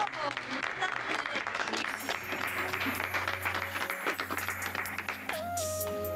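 A room of guests clapping and applauding. About five seconds in, slow music starts with long held notes.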